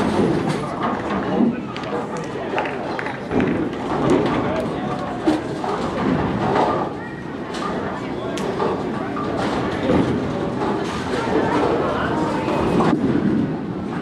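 Busy bowling alley: a steady murmur of voices with frequent short knocks and clatters of balls and pins from the lanes.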